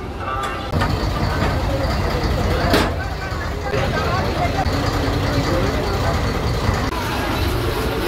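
Steady low rumble of a ferry launch's engine, with people's voices over it and one sharp knock a little before the midpoint.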